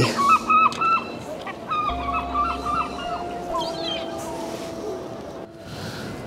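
Herring gulls calling: two runs of short, repeated, pitched calls in the first three seconds, then quieter.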